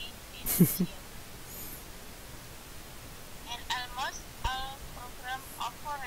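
A student's voice reading an English passage aloud over an online-class audio connection. It sounds thin and broken, in short phrases from about halfway in. A brief loud noise burst comes about half a second in, with a steady hiss throughout.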